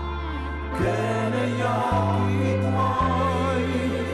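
A sung theme song: choir-like vocals over held bass notes that step to a new note about once a second.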